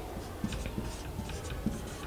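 Whiteboard marker writing a word on a whiteboard: a run of short, faint strokes of the felt tip on the board.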